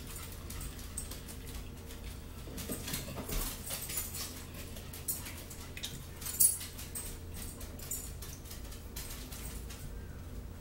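Close-up eating and drinking sounds: chewing, mouth clicks and sipping through a plastic cup's straw, with one sharper click about six and a half seconds in, over a steady low hum.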